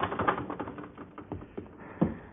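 A rapid, irregular run of light taps and clicks, a studio sound effect.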